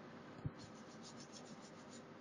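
Near silence: faint room hiss, with one soft, low thump about half a second in.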